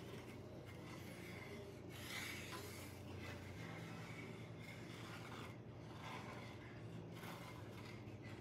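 Wooden spatula stirring and scraping across the bottom of a frying pan of milk gravy as it thickens, in faint, irregular strokes over a low steady hum.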